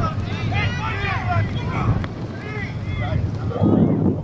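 Distant shouting voices carrying across an outdoor football field, over steady wind rumbling on the microphone, with a short louder burst of noise near the end.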